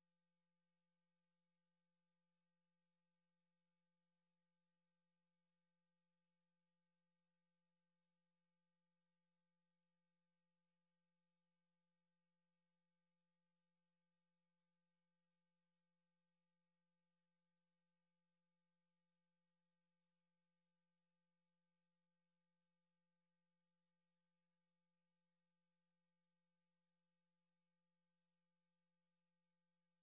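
Near silence, with only a very faint, steady low hum.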